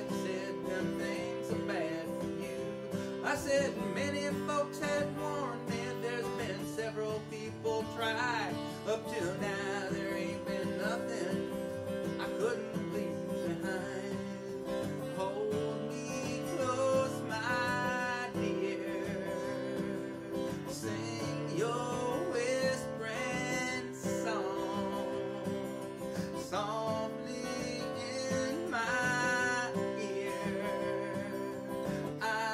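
Steel-string acoustic guitar played solo, chords strummed and picked at a steady pace through an instrumental break in a country song.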